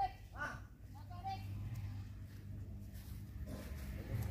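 Truck's diesel engine running as the truck rolls slowly past, a steady low hum that grows louder near the end as the cab draws closer. Faint voices are heard briefly in the background.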